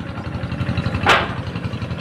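A small engine running steadily, a low even hum. About a second in, a short, loud hissing rustle.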